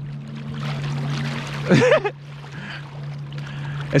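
Water sloshing and splashing around a camera held at the surface of a lake, over a steady low hum. A short voice sound comes about two seconds in.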